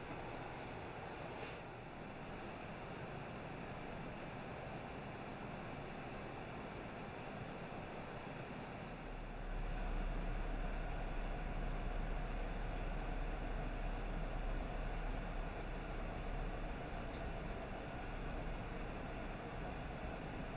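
Steady background noise with no clear event in it; a deep low rumble joins about nine seconds in and keeps going.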